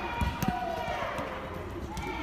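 Children's voices calling out in a large indoor football hall, with two thuds of a football being kicked about a quarter and half a second in.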